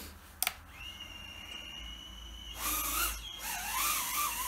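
Mobula 8 micro FPV drone's small brushless motors: a click, then a steady high whine as the motors spin at idle. About two and a half seconds in they throttle up and the drone takes off, with a louder whine that wavers in pitch.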